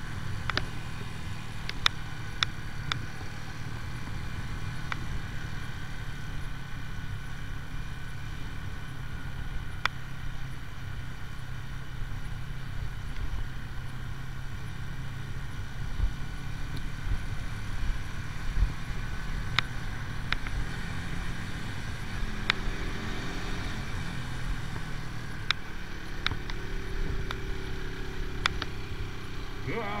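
AJS Tempest Scrambler 125 single-cylinder four-stroke engine running steadily under way, mixed with road and wind noise, with a few short sharp clicks.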